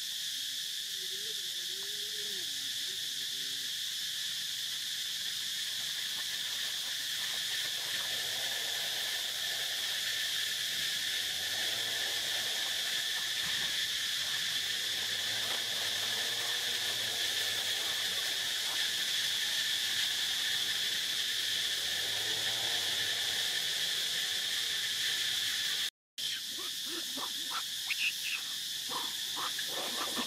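Steady, high-pitched chorus of forest insects, an unbroken buzz. It drops out for a moment about four seconds before the end, and a few faint clicks follow.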